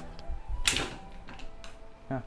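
Background music under a brief noisy clatter, like power tools being handled, about two-thirds of a second in, with a few small clicks.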